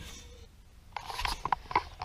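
A quick run of small clicks and rubbing from about a second in, typical of a hand-held camera being handled and moved.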